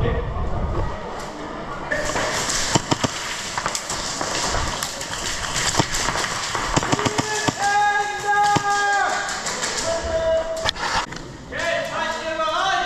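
Airsoft gunfire in a large hall: scattered sharp shots and hits, several close together about three seconds in, others spread through the rest. Over it, people's voices, including long held shouts past the middle and again near the end.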